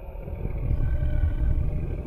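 A loud, low rumble that swells over about a second and eases off near the end.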